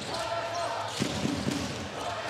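A basketball being dribbled on a hardwood arena court, bouncing about once a second over steady crowd noise.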